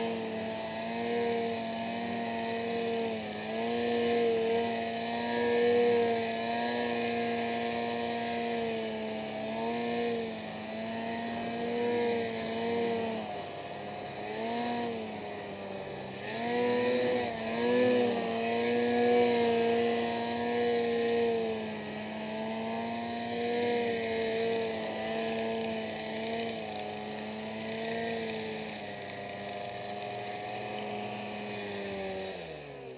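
2008 Ski-Doo Summit XP snowmobile's two-stroke engine running hard through deep powder, its pitch rising and falling with the throttle. There are several quick drops and climbs in revs around the middle.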